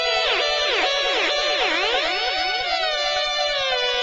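Instrumental electronic trance music: a held synthesizer chord with a synth line swooping up and down in pitch about twice a second, then one long downward glide that settles near the end.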